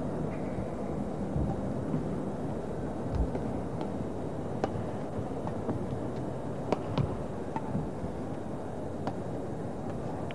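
Badminton rally: sharp racket strikes on the shuttlecock, a second or so apart, starting about three seconds in, over the steady background noise of a crowded sports hall.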